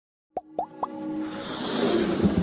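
Logo intro sound effects: three quick plops about a quarter-second apart, then a swelling whoosh with music building under it.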